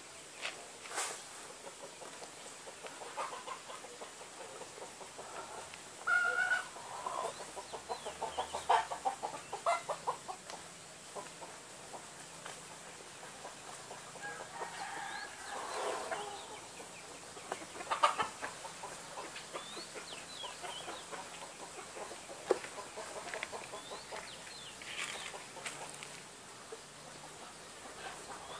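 Scattered short bird calls, irregular and coming in clusters, over a steady faint outdoor hiss, with a few sharp clicks or knocks along the way.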